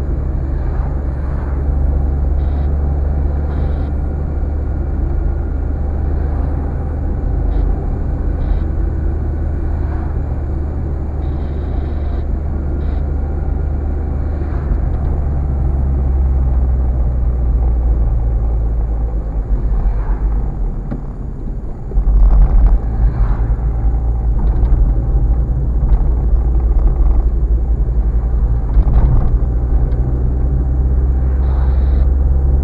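Car driving, its engine and tyre noise heard from inside the cabin as a steady low rumble. It sags about twenty seconds in, then comes back louder.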